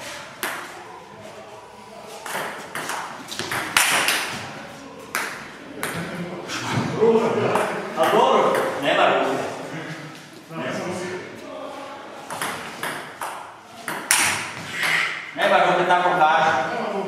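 People talking in a large hall, with sharp short clicks or pings heard again and again among the voices.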